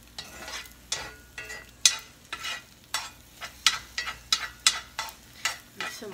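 Spatula scraping and knocking against a frying pan while eggs are stirred, in sharp irregular strokes about once or twice a second, with a faint sizzle of the eggs frying underneath.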